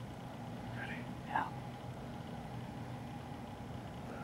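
A steady low hum runs throughout, with a brief, faint voice about a second in.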